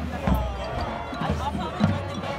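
Marching band drums playing, with repeated low bass-drum hits, under crowd voices in the stands.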